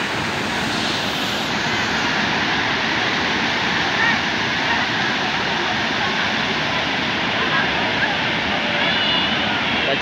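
Waterfall: a steady rush of water falling and flowing over rock.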